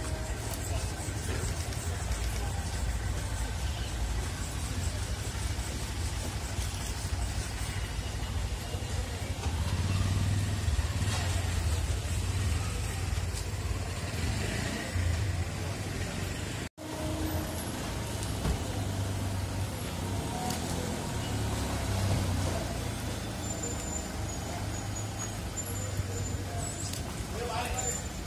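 Street ambience: a steady low vehicle rumble with people talking in the background, broken by a momentary cut in the sound about two-thirds of the way through.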